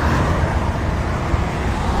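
Steady low rumble and hiss with no distinct events.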